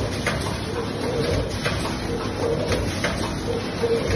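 Multihead weigher tea pouch packing machine running. Sharp clicks come at uneven intervals over a steady mechanical background, and a short low humming tone recurs about once a second.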